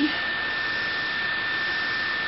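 Steady whirring hiss with a constant high-pitched whine running through it, the running noise of a computer's cooling fan and electronics.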